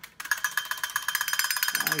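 Marx tin wind-up drummer boy toy running: its clockwork beats the tin drum in rapid, even metallic taps with a ringing tone, starting a moment in.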